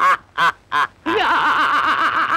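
Two men laughing loudly: a few short bursts of laughter, then from about a second in a long, unbroken hearty laugh with a wavering pitch.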